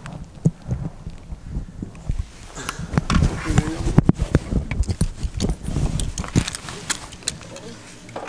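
Irregular knocks, thumps and scrapes of a handheld camera being handled and moved as someone squeezes through a narrow dirt opening over loose timber and debris. A few brief bits of voice come through about three seconds in.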